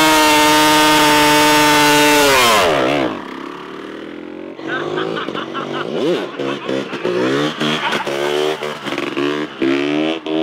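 Two-stroke motocross bike held at high revs during a burnout, then the revs fall away about two and a half seconds in. After that the engine revs up and drops back again and again as the bike rides off.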